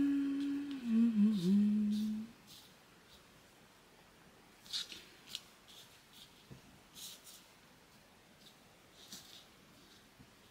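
A woman's voice humming one held note that dips in pitch and trails off about two seconds in. Then soft, brief rustles every second or two as thin cheesecloth is pulled apart and arranged by hand.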